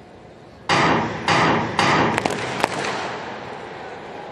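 The starting gun for a sprint hurdles race fires a little under a second in. Its loud bang comes three times about half a second apart, followed by a few sharp clicks and a fading ring.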